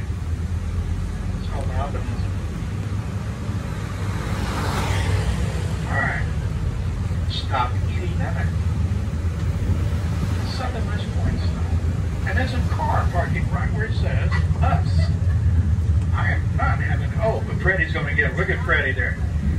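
Tour trolley bus driving, its engine giving a steady low hum heard from on board an open-sided car, with a brief whoosh about four seconds in. Snatches of people's voices come and go over it.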